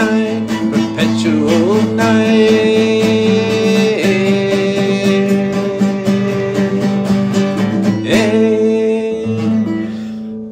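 A man singing long held notes over a strummed acoustic guitar, closing a song. The strumming stops right at the end, leaving the last chord ringing.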